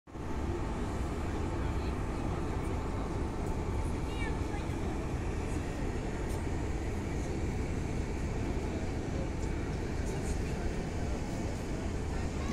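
Outdoor city ambience: a steady low rumble with faint voices in the distance.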